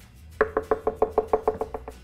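A spoon tapping and scraping against a plastic blender jar as Greek yogurt is knocked off it: a quick, even run of light knocks, about ten a second, lasting about a second and a half.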